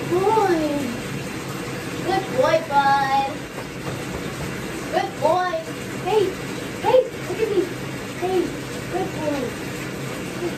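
Beagle-lab mix dog whining in the bathtub: a string of short rising-and-falling cries, with one longer held whine about three seconds in, the sign of a dog that hates baths.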